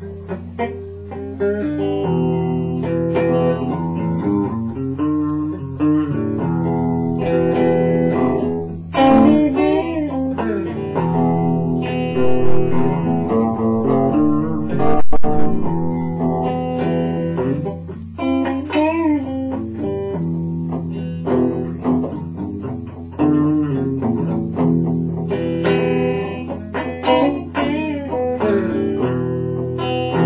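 Guitar playing a blues riff: a run of plucked notes and chords, with some notes bent up and down in pitch, over a steady low hum. There is a single sharp knock about halfway through.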